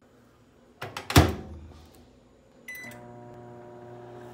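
Microwave oven shut with two sharp knocks about a second in, then a short keypad beep near three seconds, after which the oven starts running with a steady hum on a 30-second heating cycle.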